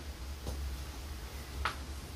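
A pause in speech filled by a steady low room hum, with a faint click about half a second in and a sharper short click near the end.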